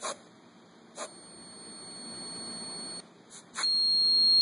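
Knocks on piezo vibration sensors, each setting off a high-pitched piezo buzzer tone. A tap at the start and another about a second in bring on a steady beep that grows louder for two seconds and cuts off. Two more taps follow, and a second, louder and slightly lower beep starts near the end.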